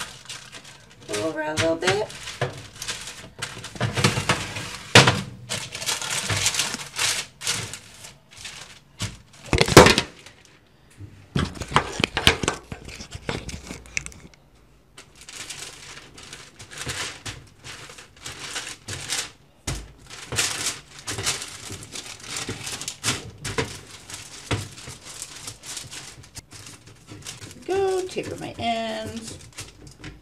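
Parchment paper crinkling and rustling under hands rolling and shaping bread dough on a metal baking sheet, with one sharp knock about ten seconds in.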